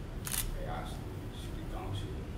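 A camera shutter clicks once, about a quarter of a second in, over faint talk in the room.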